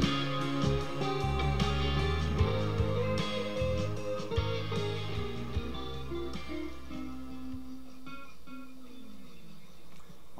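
Electric guitar soloing over a slow blues backing track in F, the band sound thinning out after about six seconds to a few held notes that die away as the song ends.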